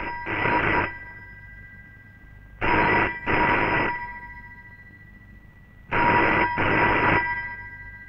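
Rotary dial telephone bell ringing in double rings: three pairs about three seconds apart, each ring lingering briefly after it stops.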